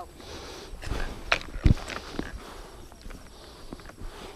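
Footsteps walking through grass, with a few scattered knocks and a dull thump about a second and a half in, over faint rustling.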